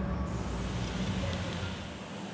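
A steady low hum under an even hiss, with no single event standing out; the hum drops away near the end.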